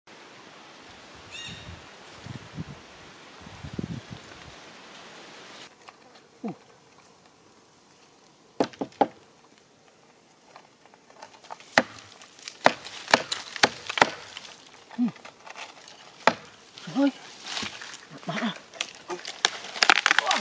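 Steady insect buzz with a single short bird call in the first few seconds. Then a machete hacks into a dead tree stump: sharp knocks, sparse at first and coming faster in the second half.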